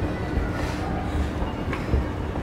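Steady low rumble of a moving vehicle, with a faint steady hum and a few soft low thumps.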